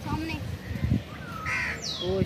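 Birds calling over people's voices, with a short high falling whistle near the end.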